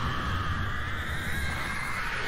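A Carrionite's long, unbroken scream as it is named. It holds one pitch and sinks slightly, over a deep rumble.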